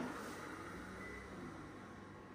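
Panasonic EP-MA103 massage chair running: a steady mechanical whirring that starts suddenly, then slowly eases off.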